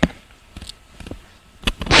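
Sharp clicks and knocks of handling close to the microphone: one loud click at the start, a few faint ticks, then more clicks near the end.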